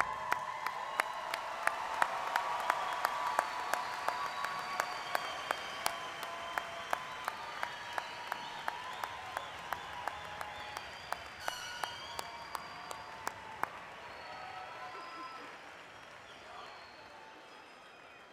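Large crowd applauding in a big arena, with one nearby pair of hands clapping steadily about twice a second above the rest, and scattered crowd voices. The applause fades gradually and has almost died away near the end.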